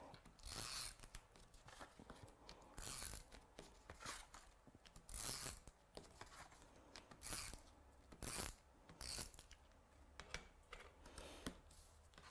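A handheld adhesive applicator drawn in short strokes across the back of a card panel resting on scrap paper, laying down glue for mounting. There are about a dozen brief, dry strokes at uneven intervals, roughly one a second.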